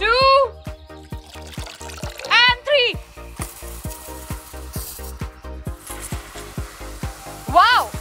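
Background music with a steady beat, over which a hiss of foam rushing out of the flask rises a few seconds in as the potassium permanganate sets off the hydrogen peroxide. Short rising-and-falling voiced calls come near the start, about two and a half seconds in, and near the end.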